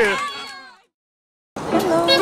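A shouted voice trails off as the sound fades out, then about three-quarters of a second of complete silence, then music with steady sustained notes begins suddenly about one and a half seconds in.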